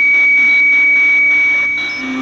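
One long, steady, piercing high tone, like an electronic beep or whine, held for about two and a half seconds in a song's soundtrack and stopping just before the song's beat returns. Faint rhythmic pulses run beneath it.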